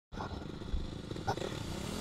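Off-road motorcycle and quad engines idling, an uneven low rumble, with a couple of light knocks.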